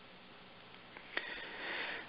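About a second of near silence, then a small click and a person breathing in through the nose near the end.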